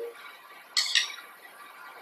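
A metal spoon scraping briefly once against a small ceramic bowl while scooping tuna filling, about a second in.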